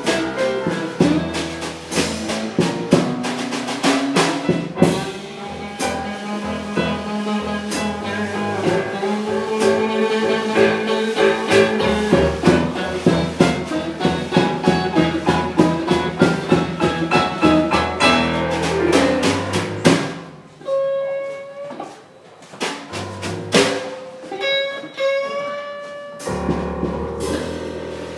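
Live blues band playing an instrumental passage on drum kit, keyboard and electric guitar, with steady drumming under held keyboard chords. About twenty seconds in, the drums stop for a short break, leaving a few sparse single notes, before the band comes back in at the end.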